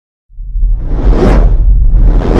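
Whoosh sound effect over a deep, steady rumble, part of a TV channel's animated logo intro. It starts abruptly after a moment of silence and swells to a peak just over a second in.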